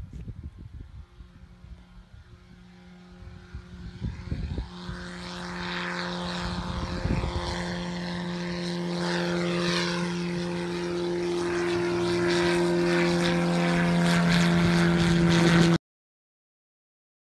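Zenith CH750 light aircraft's propeller engine at takeoff power as the plane climbs out toward and over the listener. The engine is faint at first, grows steadily louder, and cuts off abruptly at the very end.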